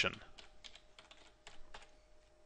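Computer keyboard being typed on, a quick run of about ten keystrokes as a word is entered.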